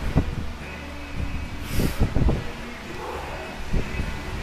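Low thuds and a short breathy exhale during a shoulder exercise with a small weight plate held in each hand, over a steady low hum.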